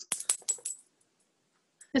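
About half a dozen light clicks in quick succession within the first second.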